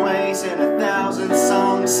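A man singing over piano chords he plays himself on a grand piano.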